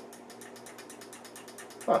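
Rapid, even mechanical ticking, about eight ticks a second, with a short spoken 'huh' at the very end.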